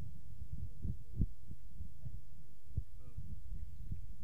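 Low, steady outdoor rumble with irregular soft thumps, one a little louder about a second in, and a faint far-off voice about three seconds in.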